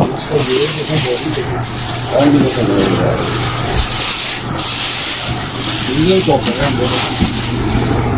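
Plastic wrapping crinkling and rustling as a boxed pressure washer is handled. A steady low hum and indistinct voices run underneath.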